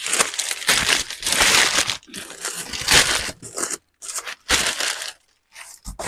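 Crumpled kraft packing paper rustling and crinkling as it is pulled out of a cardboard box, in dense bursts for about four seconds, then in shorter handfuls.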